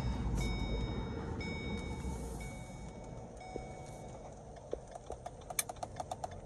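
Inside a moving 2013 Ford C-Max Hybrid, low road and tyre rumble fades as the car slows. A high electronic tone sounds for about four seconds, broken about once a second. Near the end come rapid ticks from the turn-signal flasher, fast because a front right blinker bulb is out.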